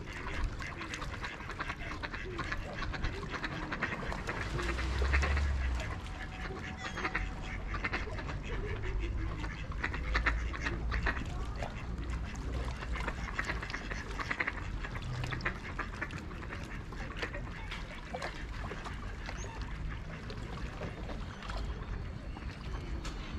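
Ducks on a lake quacking at irregular intervals, with low rumbles of wind on the microphone, strongest about five seconds in.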